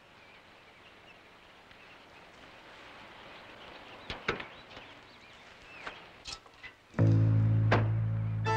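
Faint background with a few scattered clicks and knocks, then a loud music chord comes in suddenly about seven seconds in and is held.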